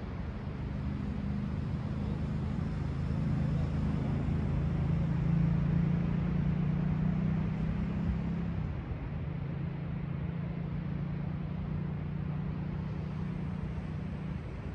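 A steady engine drone over a rushing background. It swells to its loudest midway and drops a little after about eight seconds.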